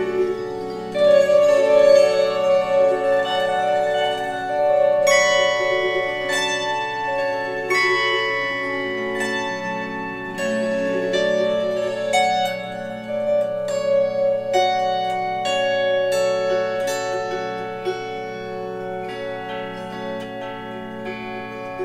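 Solo harp tuned to F# minor playing a slow melody of plucked notes that ring on and overlap, over sustained lower notes.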